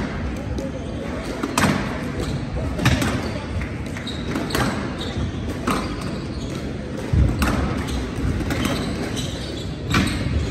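A squash rally: sharp cracks of the racket striking the ball and the ball hitting the court walls, coming every second or so, echoing in a large hall.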